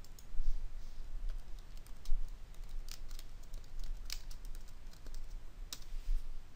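Typing on a computer keyboard: irregular keystrokes spread over several seconds.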